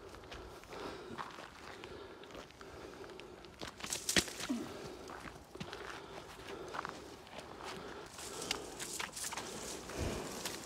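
Footsteps walking through long grass and undergrowth, with plants rustling against legs. The steps are irregular, with a sharper click about four seconds in and another cluster of louder steps near the end.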